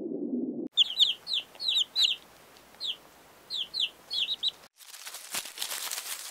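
Chicks peeping: about a dozen short, high peeps, each falling in pitch, some in quick pairs and threes. They follow a brief low underwater whale sound, and near the end they give way to crackling rustle of wood-shaving bedding.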